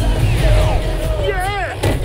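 Film trailer soundtrack: music with a sound effect whose pitch slides down during the first second, then a short cry from a voice about one and a half seconds in, its pitch rising and falling.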